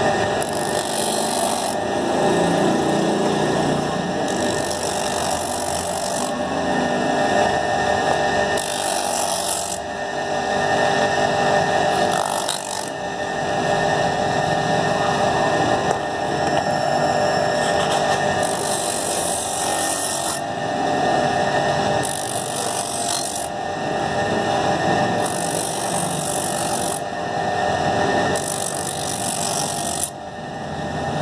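Grinding wheel of a flip-flop sole trimming machine running steadily, with a hissing abrasive rasp about eight times, each lasting a second or two, as a foam flip-flop sole is pressed against the wheel to trim and smooth its edge.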